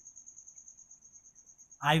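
An insect trilling: a faint, steady, high-pitched pulsing tone. A man's voice comes in near the end.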